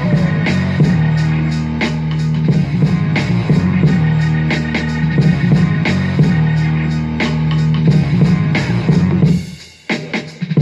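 Instrumental end-credits music with a steady bass line and regular drum hits; it drops away sharply shortly before the end, then picks up again.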